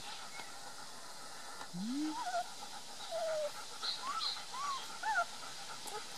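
Three-week-old Beauceron puppies giving short, high whimpers and squeaks, about half a dozen scattered through the second half, each sliding up and down in pitch.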